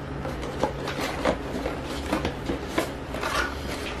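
A cardboard breast pump box being opened and handled: scattered soft scrapes and light taps of the cardboard over a low steady hum.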